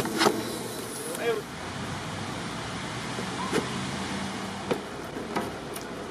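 Steady mechanical running noise of worksite machinery, with a few light clicks and knocks from handling and a brief voice a little over a second in.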